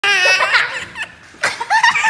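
A toddler laughing loudly: a long, high-pitched peal at the start, a brief pause, then short bursts of laughter near the end.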